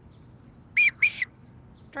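Two short blasts on a sports whistle, each dropping in pitch as it cuts off, calling a stop to play.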